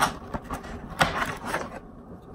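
Cardboard packaging rubbing and scraping, with a few sharp clicks, as a charging cable and plug are worked out of a tight cardboard box insert.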